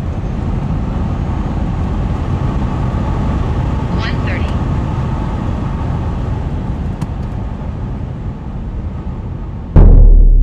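Road and wind noise inside the cabin of a Tesla Model S Plaid at over 100 mph, through the end of a quarter-mile run and into braking, easing slightly as it slows. Near the end a sudden, very loud drum boom cuts in.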